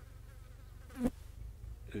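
An insect buzzing near the microphone, its pitch wavering, with a brief click about halfway through.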